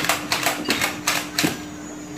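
Battery-powered Nerf Flyte CS-10 blaster firing foam darts in quick succession: a rapid string of sharp clicks, several a second, that stops about a second and a half in.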